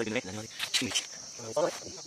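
Steady high-pitched insect chirring, with a few faint snatches of voices.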